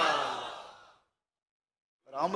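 A man's long, breathy sigh close to the microphone, fading out within about a second.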